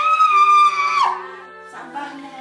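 A young woman's high-pitched scream of pain, held for about a second and then falling away, as her sore leg is massaged. Soft background music runs underneath.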